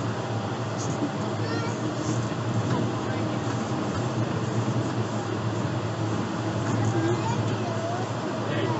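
Steady running noise of the Yurikamome's rubber-tyred, guideway-steered train heard from inside the car, with a low hum under it, as the train slows toward a station.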